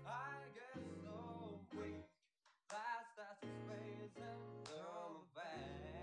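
A man singing a slow R&B ballad over keyboard chords, played back quietly. The music drops out briefly about two seconds in.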